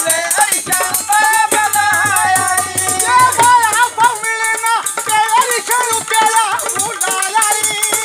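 A man sings a Punjabi folk melody in a wavering, ornamented voice. Under it runs a constant fast metallic jingling, typical of a chimta, the long tongs fitted with small cymbals.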